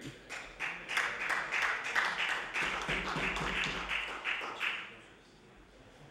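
Applause from the members of a legislative assembly as a resolution is carried: a dense, irregular patter of many claps and taps that dies away about five seconds in.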